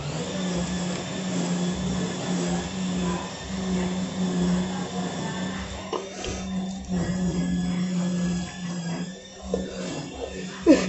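A steady motor-like hum that sets in suddenly and keeps going. About six seconds in, water poured from a plastic cup splashes over a person's head and clothes underneath it.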